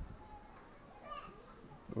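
Faint voices of children playing in the background, heard in short scattered snatches.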